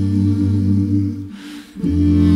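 A cappella vocal group holding a sustained chord over a deep bass voice. It drops away briefly past the middle and comes back near the end.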